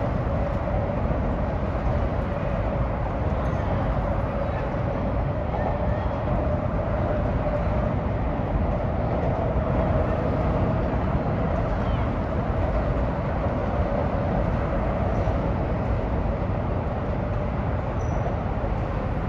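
Steady drone of road traffic, with a faint hum running through it and no breaks or distinct events.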